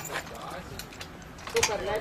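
A padlock being unlocked on a steel mesh gate: a series of sharp metallic clicks and rattles. Voices come in near the end, louder than the clicks.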